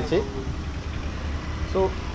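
Low, steady engine rumble of road traffic, with a man's voice briefly at the start and again near the end.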